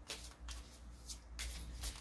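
Tarot cards being shuffled by hand, in several quick riffles.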